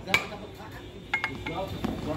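Light metallic clinks and taps from hand-tool work on the fan end of an electric water-pump motor: one tap at the start, then three quick clinks close together just past the middle, each with a short ring.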